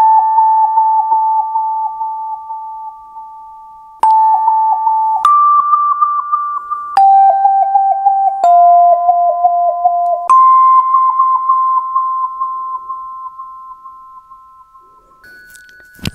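Wah-wah tubes: tuned metal tube bells struck one at a time with a mallet, about seven notes at different pitches. Each note rings and fades with a wavering wah-wah warble, and the note struck just after ten seconds in rings for about five seconds, with one last quieter strike near the end.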